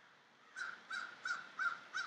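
A crow cawing in a quick, even series, about three caws a second, starting about half a second in.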